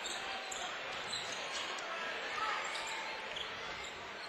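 Gymnasium crowd murmur during a basketball game in play, with a basketball being dribbled on the hardwood floor.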